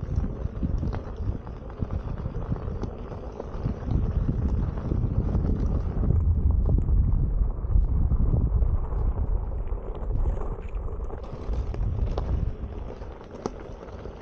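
Wind buffeting the microphone of a camera on an electric unicycle rolling down a loose gravel dirt track, a steady low rumble with scattered small clicks and knocks from the tyre over stones. It is loudest through the middle.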